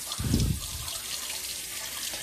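Kitchen tap running, water pouring onto a plate in the sink in a steady stream. A brief low thump comes about a third of a second in.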